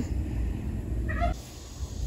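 A single short animal call, a meow-like cry lasting about a third of a second, about a second in, over a low rumble on the microphone.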